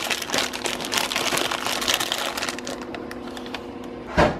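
Paper, cards and a plastic snack bag rustling and crinkling as hands rummage through a gift basket with shredded paper filler, growing quieter toward the end.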